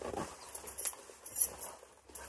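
Handling noise from a lightweight zip-up anorak as it is zipped to the neck and the collar is straightened: soft fabric rustling, with a brief brighter rustle about one and a half seconds in.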